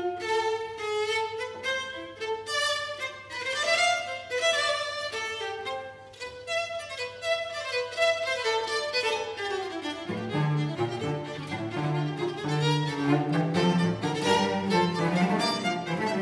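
String orchestra playing, with violins and violas carrying the bowed melodic lines. About ten seconds in, the lower strings enter underneath and the sound thickens.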